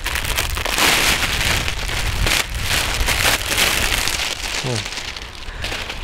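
Clear plastic wrapping crinkling and crackling as it is handled and pulled off a compound bow, a dense continuous run of crackles.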